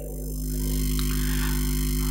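Steady electrical mains hum and buzz from the sound system, swelling over the first half second and then holding level.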